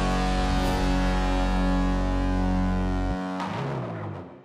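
Outro music: one long held chord. The bass cuts off about three seconds in and the rest fades out near the end.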